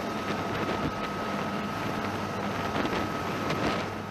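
AH-1Z Viper attack helicopter running on the ground and lifting off, a steady rush of rotor and turbine noise with a low hum and a thin high whine, while a second helicopter hovers nearby.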